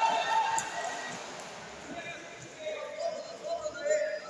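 Voices calling out and talking across a sports hall, with soft thuds of feet on the martial-arts mats.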